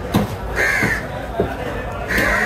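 A crow cawing once, a harsh call about half a second in, with a few short knocks around it.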